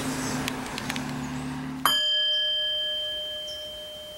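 A single bell-like chime struck about two seconds in, ringing on one clear tone with higher overtones and slowly fading away. Before it, a steady outdoor hiss with a low hum.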